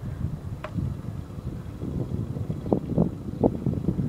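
Car driving along a road, heard from inside: a steady low road and engine rumble with wind noise on the microphone.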